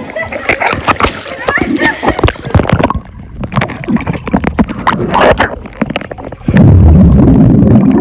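Pool water heard by a submerged camera: splashing and knocking of water against the camera. Near the end a loud, low rush of air bubbles blown at the microphone underwater.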